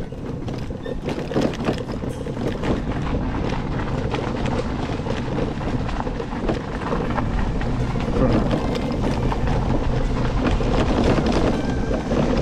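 Electric motorbike riding over a rough, rutted dirt track: wind rushing over the microphone with many small rattles and knocks from the bike jolting on the bumps. The low rumble grows stronger about halfway through.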